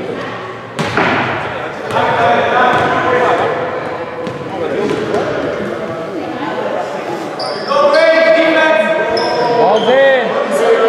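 A basketball hitting the hoop with a sharp bang about a second in, then bouncing and being dribbled on a hardwood gym floor, with voices echoing around the hall.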